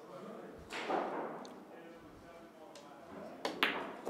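A pool cue strikes the cue ball and ball clicks on ball, as the 8-ball is shot in to win the rack. A few sharp claps start near the end as the crowd begins to applaud.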